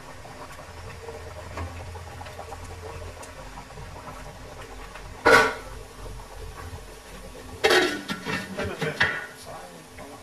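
Fish curry simmering in a wok with a steady low hiss, then a glass pot lid with a metal rim set onto the wok with a few clattering knocks about eight seconds in.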